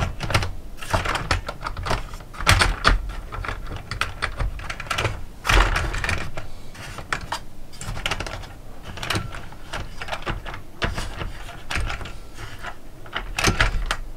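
Irregular small clicks and clatters of OO gauge model railway coaches being handled and slid along the track by hand.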